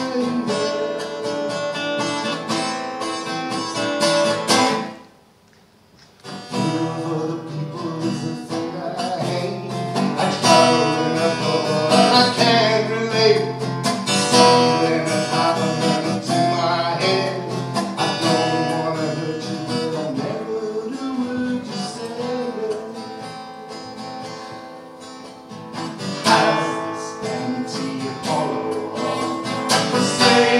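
Acoustic guitar being played in a song. It stops almost to silence for about a second, around five seconds in, then starts again, and grows softer for a while before picking up near the end.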